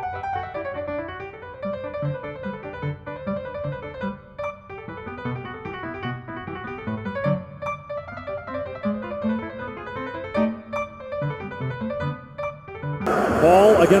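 Background piano music, a slow melody of single notes over lower chords. About a second before the end it cuts off and loud arena crowd noise with a commentator's voice takes over.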